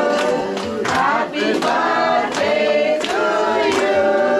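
A group of men and women singing together in chorus, with hand claps keeping the beat about every two-thirds of a second.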